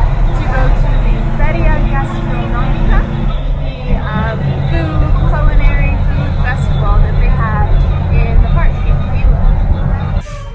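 Converted old US school bus (chicken bus) running at road speed, its engine a steady low drone heard from inside the cabin, with a voice over it throughout.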